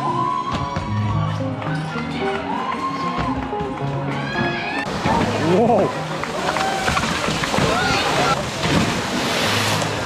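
Background music for the first few seconds, then the live sound of an outdoor crowd with chattering voices and a "wow!" about halfway through. Near the end, water splashes and sloshes as a racer wades through a water-filled obstacle pit.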